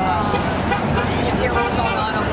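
Road traffic noise from a busy street, with people talking nearby.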